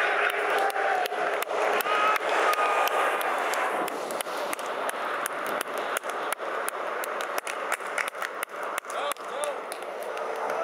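Roadside din with indistinct voices and many sharp clicks scattered throughout.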